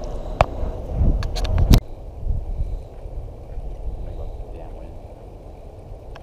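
Several sharp clicks and low knocks of handling against the camera microphone, the loudest a single click about two seconds in, followed by a low, steady rumble.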